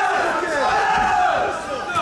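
Fight crowd shouting and yelling, many voices at once, steady and loud throughout.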